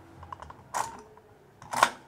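Plastic clicks from the shoe-adjustment lever of a Makita DJR187 reciprocating saw as it is worked by hand: two distinct snaps about a second apart, the second louder, with a few lighter ticks.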